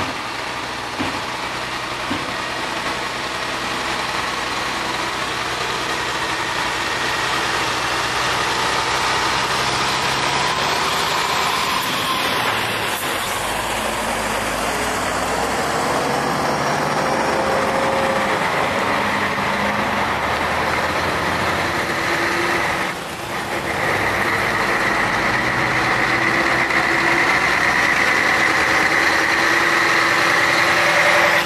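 Heavy-haulage Mercedes-Benz tractor units pulling long multi-axle trailers past at walking pace: diesel engines running under light load with tyre and trailer rumble. The sound grows gradually louder as the trucks draw near, and a steady high whine joins in the last few seconds.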